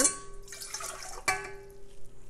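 Warm water poured from a glass measuring cup into a stand mixer's stainless steel bowl, splashing, with the metal bowl ringing. A short clink comes about a second and a quarter in, and the ring carries on after it.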